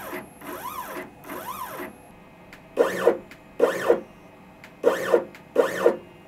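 CNC stepper motors being jogged in short test moves. There are three fainter whines that rise and fall in pitch as the motor speeds up and slows down, then four louder, shorter buzzes about a second apart. These are checks that each motor turns in the right direction.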